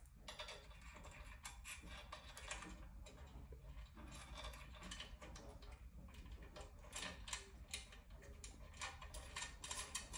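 Faint, irregular small metallic clicks and ticks as a hex (Allen) key turns and seats screws into the mount of a fibre laser's head, coming more often over the last few seconds.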